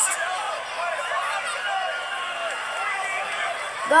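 Wrestling TV broadcast audio: a commentator talking over arena crowd noise.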